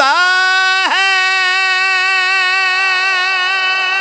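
A man singing one long, high held note of a qasida. The note breaks briefly about a second in, then is held steady with a slight waver.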